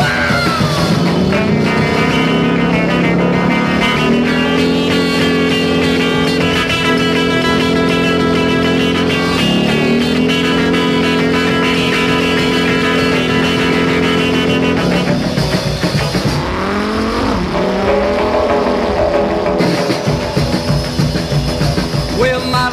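Instrumental break of a rock and roll song with a motorcycle engine revving over it: the engine climbs in pitch, holds steady, dips and climbs again about ten seconds in, then drops and rises once more near the end.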